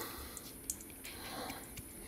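Faint rustle of crushed kukui nut being sprinkled by hand into a stainless steel bowl, with a light tick about two-thirds of a second in.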